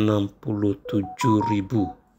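A person speaking Indonesian, with a few short steady tones at different pitches sounding behind the voice in the second half.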